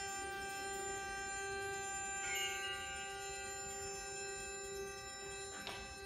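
Wind ensemble holding a soft, sustained chord, with two struck mallet-percussion notes ringing over it, one about two seconds in and one near the end.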